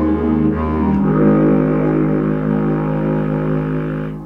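Contra-alto clarinet playing a slow hymn melody over an orchestral backing track, moving to a new note about a second in and holding it as a long low note to the end.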